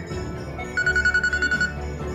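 An electronic phone ringing: a rapid high trill of about ten pulses a second, lasting just under a second and starting about a second in, over a steady low hum.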